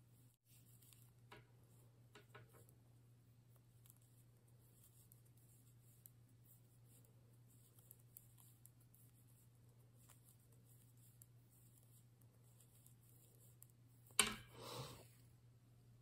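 Near silence with a low steady hum, broken by faint clicks of metal knitting needles as a row of yarn is knitted by hand. Near the end a sharp knock followed by about a second of rustling stands out as the loudest sound.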